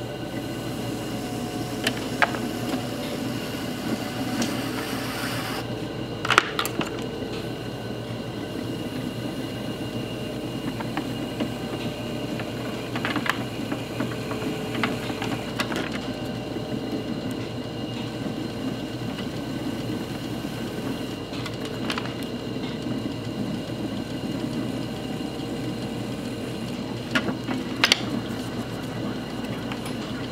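Electric potter's wheel running with a steady motor hum while a loop trimming tool scrapes clay from the foot of an upside-down bowl held in a pad grip, with scattered sharp clicks and scrapes, the loudest about six seconds in and just before the end.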